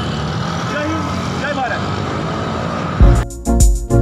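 Steady street traffic noise with faint voices in the background, then loud electronic music with heavy drum beats cuts in suddenly about three seconds in.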